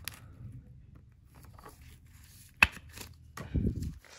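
Gloved hands handling a trading card, with faint rustling and one sharp click or tap a little past halfway.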